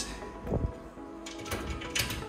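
Glass display cabinet door being closed: a low thump about half a second in, then a few light clicks, over background music.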